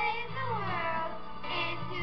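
Girls' voices singing into a microphone over an instrumental accompaniment, with one sung note sliding downward in pitch near the middle.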